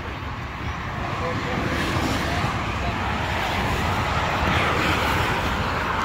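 A passing motor vehicle's road noise, swelling for a few seconds and easing off near the end, over faint background voices.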